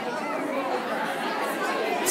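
Background chatter of many overlapping voices, with no single voice standing out.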